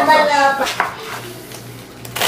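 A voice sounds briefly at the start, then there is a faint clatter of kitchen utensils over a steady low hum.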